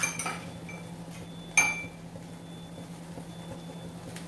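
Metal kitchen utensils clinking: a few light clinks, then one louder clink about a second and a half in that rings briefly, over a steady low hum.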